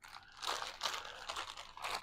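Clear plastic bag full of stickers and patches crinkling as it is grabbed and handled, an irregular crackle that starts about half a second in.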